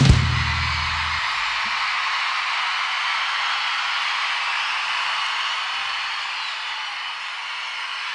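Live audience cheering and applauding as a rock band's final chord rings out and stops about a second in; the cheering carries on steadily and eases off slightly near the end.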